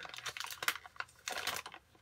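Baseball cards and their foil pack wrapper being handled: a run of irregular light clicks and crinkles.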